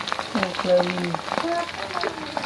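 A person's voice speaking briefly over the sizzle and crackle of grasshoppers deep-frying in hot oil in a wok.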